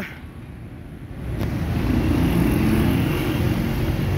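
A low engine rumble that swells about a second in and carries a steady low hum through its second half.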